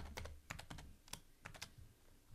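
Faint computer keyboard keystrokes typing a password: a quick run of about ten key taps that stops about a second and a half in.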